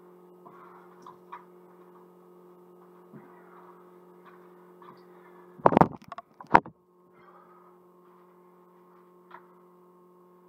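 Steady electrical hum throughout. About six seconds in, the recording device is handled at close range: a loud brief rustle followed by a sharp knock.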